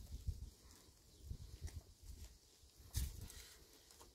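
Footsteps scuffing and thudding on dry stony ground, uneven, with a sharper knock about three seconds in.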